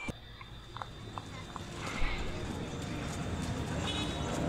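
A few light knocks about half a second apart, then street ambience with distant voices that slowly grows louder.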